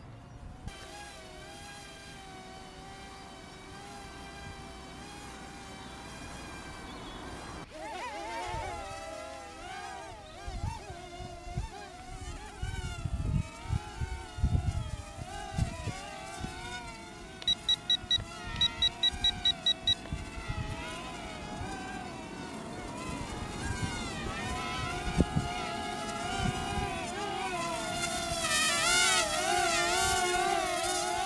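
Motors and propellers of a small toy-brick mini quadcopter with a foam wing whining in flight, the pitch wavering up and down as the throttle changes, growing louder near the end as it passes close. A quick run of short high beeps sounds partway through, and low thumps come and go in the middle.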